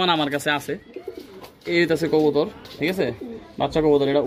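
Domestic pigeons cooing in a loft, mixed in with a man's voice.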